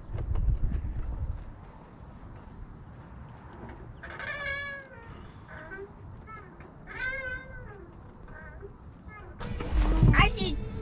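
A young child's high-pitched squeals of delight while swinging, two long wavering ones about four and seven seconds in and a few shorter ones near the end. Wind rumbles on the microphone in the first second or so.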